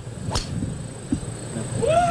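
A tee shot: a golf club strikes a teed-up ball with one sharp crack about a third of a second in, against a low outdoor crowd murmur. Near the end a voice calls out in one drawn-out cry that rises and falls.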